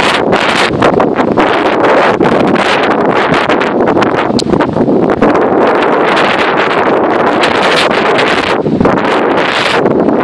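Loud, constant wind buffeting the microphone of a camera on a moving handlebar-steered off-road vehicle on a dirt trail, with the vehicle's running mixed in beneath.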